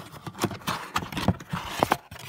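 Hands handling a cardboard box and its packed contents: a series of irregular knocks and rustles of cardboard and plastic wrap, the loudest knocks in the second half.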